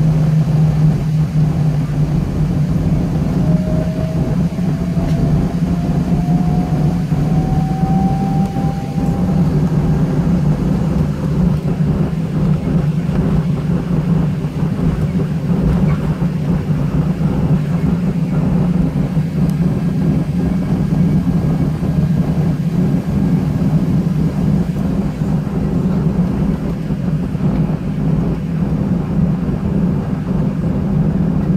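Cabin noise of a Southwest Boeing 737 taxiing to the gate: the jet engines running at idle as a loud, steady low hum, with a faint rising whine between about four and ten seconds in.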